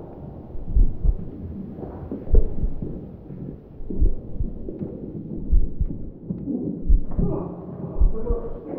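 Low, heartbeat-like thumps, some of them doubled, repeating about every second and a half over a murky low rumble.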